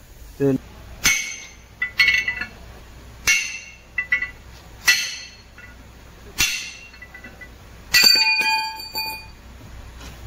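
Steel bearing races from a broken wheel-loader front wheel bearing clinking on a concrete floor as they are set down or dropped: about seven sharp metallic clinks, the last one about eight seconds in ringing for about a second.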